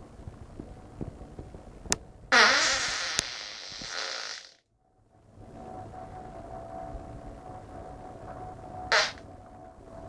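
A person breaking wind: a loud fart about two seconds in, lasting about two seconds, its pitch rising at the start. A second, short fart comes near the end.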